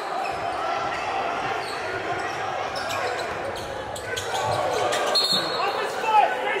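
Live gym sound of a basketball game: a ball being dribbled on a hardwood court amid players' and spectators' voices in a large hall, with a short high squeak about five seconds in.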